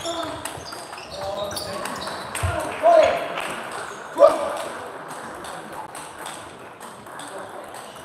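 Table tennis balls clicking off bats and tables in a sports hall, with strokes from several tables at once. Two short voice shouts come near the middle.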